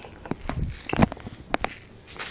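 Handling noise: a run of small, sharp clicks and knocks as an air rifle and its parts are handled.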